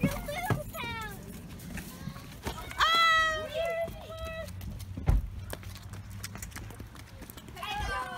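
Children's high-pitched wordless calls: a short falling cry near the start and a louder squeal about three seconds in that holds briefly, over footsteps on concrete steps. A single heavy thump comes about five seconds in.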